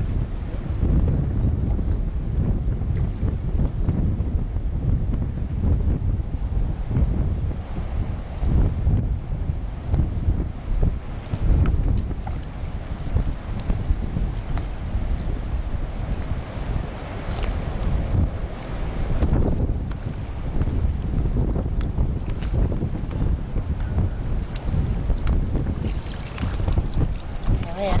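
Wind buffeting the camera microphone: an uneven low rumble that rises and falls over shallow water.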